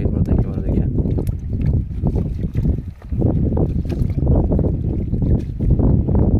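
Water sloshing and splashing as a nylon trap net and a wicker fish basket are worked in shallow river water, under a heavy low rumble of wind on the microphone.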